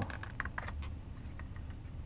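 Clear plastic packaging insert being handled and lifted off a boxed model locomotive: a run of small, light clicks and crackles, densest in the first second, then sparser, over a faint steady low hum.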